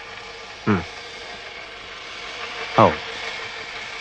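Steady background hiss with a faint hum, broken twice by a man's short single word, once about a second in and once near the end.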